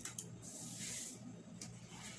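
Faint rustle of paper as a spiral-bound workbook's sticker sheet is handled, with a soft click or two.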